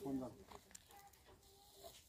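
Near-quiet outdoor background as a voice trails off at the start, with a few faint short sounds around the middle.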